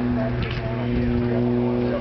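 A steady low hum with evenly spaced overtones, like a running engine or machine, with a voice counting faintly over it.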